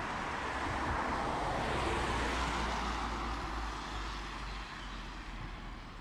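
Road traffic: a car driving past on the street alongside, its tyre and engine noise swelling about two seconds in and then fading away.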